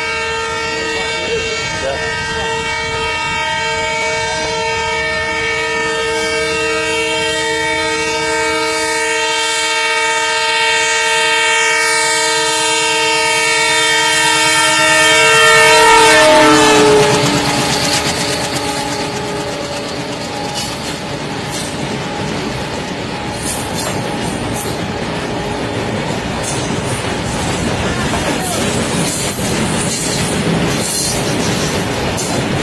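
A locomotive horn held as the train approaches, several steady notes together, loudest and dropping in pitch as it passes about sixteen seconds in. Then comes the rumble and clickety-clack of a long train of loaded flat wagons rolling by.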